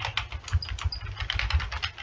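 Typing on a computer keyboard: a quick, uneven run of keystroke clicks as a formula is entered.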